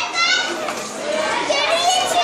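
Schoolchildren's high voices chattering and calling out over one another as a group.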